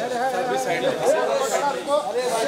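A crowd of many people talking and calling out at once, several voices overlapping.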